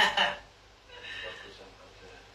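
A woman's high-pitched laugh that ends within the first half-second, followed by fainter vocal sounds about a second in.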